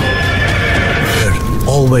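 A horse whinnies near the end, a short wavering neigh, over background music with sustained tones.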